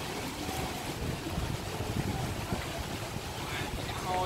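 Wind buffeting the microphone over the steady wash of sea waves on the shore.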